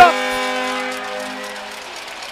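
Arena goal horn blowing a long, steady chord-like blast that signals a goal, fading near the end.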